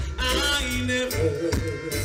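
Live band music at a stage show: a man sings into a microphone over a deep bass line and drums.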